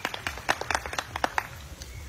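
A quick, irregular run of sharp clap-like hits, about a dozen in a second and a half, stopping about a second and a half in.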